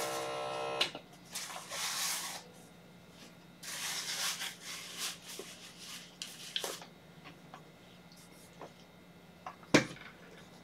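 Small electric air pump of an automatic blood pressure cuff monitor running with a steady hum, then stopping with a click about a second in. Soft hissing and rustling follow in short patches, over a faint steady hum.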